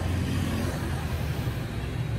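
Road traffic ambience of motorbikes and cars: a steady low rumble.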